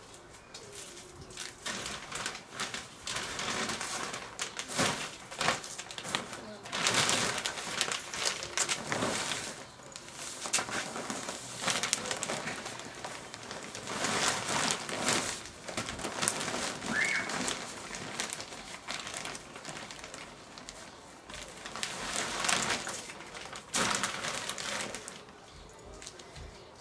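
Plastic compost bag and tarp rustling and crinkling in irregular bursts as potting compost is tipped out of the bag onto the tarp and mixed by hand.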